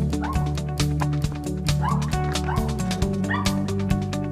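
Background music with a steady beat, over which a dog barks in several short yelps.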